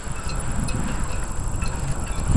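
Low rumble of wind buffeting the microphone, with a few faint light clinks.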